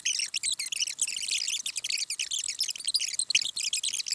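A woman's voice played fast-forward, sped up and pitched high into a rapid, continuous chirping chatter with no low tones.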